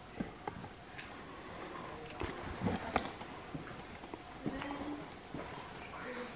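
Footsteps and scuffs on a concrete basement floor: a scatter of short, fairly quiet knocks and clicks, the sharpest a little past the middle, with a brief low murmur near the end.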